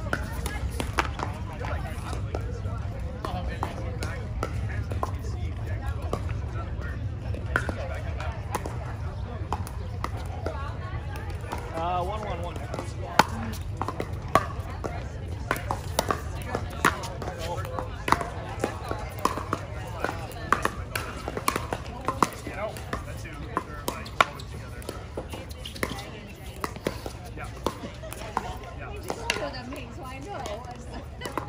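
Pickleball paddles hitting a plastic ball in rallies: sharp pops at irregular intervals, several louder ones in the second half, over the chatter of voices from around the courts.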